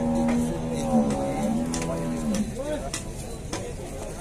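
A long, held moo from one of the penned zebu cattle, ending with a drop in pitch about two and a half seconds in.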